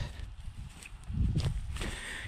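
Footsteps of a person walking over dry, matted grass and brush, a few soft steps about a second in.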